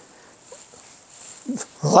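Quiet room tone during a pause in a man's talk, with a faint short sound about halfway through; his voice comes back in near the end.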